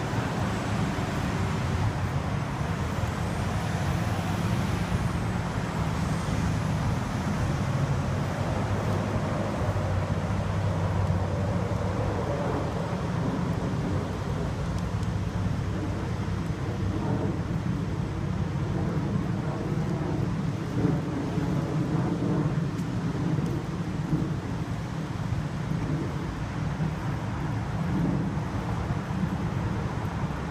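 Tow truck engine running steadily with a low rumble. A faint high whine rises and then falls between about three and six seconds in, and there is a single knock about twenty-one seconds in.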